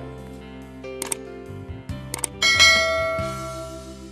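Background music under a subscribe-button animation's sound effects: two sharp clicks about one and two seconds in, then a bright bell ding that rings and fades away.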